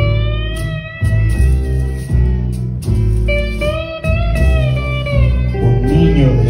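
Theremin playing two long held notes that slide gently in pitch, over a band with bass and guitar, in a live instrumental.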